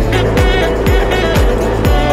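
Upbeat background music with a deep, pitch-dropping kick drum about twice a second under sustained synth chords.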